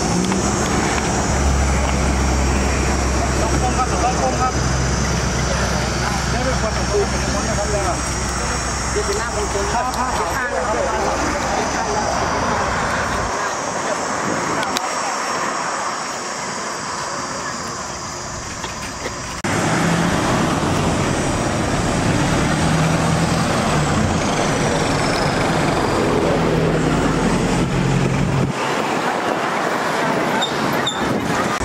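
Roadside highway traffic: vehicles running past with a steady low engine hum and tyre noise, mixed with people's voices.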